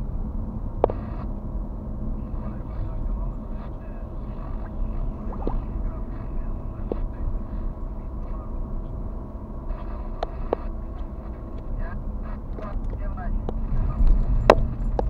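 A car driving slowly, heard from inside the cabin: a steady low engine and tyre rumble, with a few short knocks now and then.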